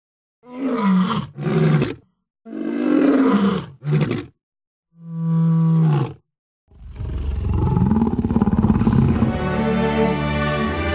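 Deep animal roars in five bursts, two quick pairs and then one longer, steadier call. Music begins about seven seconds in and carries on.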